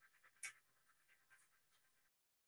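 Near silence: faint, irregular soft hissy flickers from the fading tail of the played video's soundtrack, with one brief slightly louder flick about half a second in.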